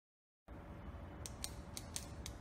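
Four sharp, short clicks about a quarter second apart, starting about a second in, over a faint low hum; a clicking sound effect as the channel name appears in the intro title.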